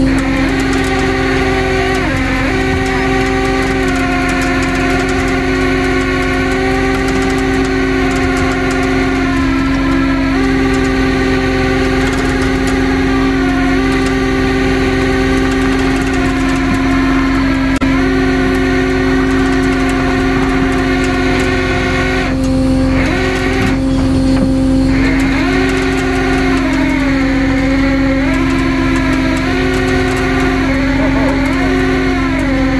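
A tow truck's engine and hydraulic winch running under load as the cable drags a car up out of a ditch. There is a constant hum, and the engine note dips and recovers every several seconds.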